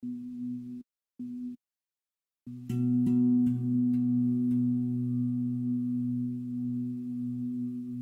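Low, steady ambient drone of two held notes, a meditation music bed. It cuts out twice in the first two and a half seconds, then comes back and holds with a faint shimmer of higher overtones.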